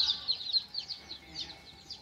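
A brooder full of Cream Legbar pullet chicks peeping together: many short, high, falling peeps overlapping, thinning out after about a second.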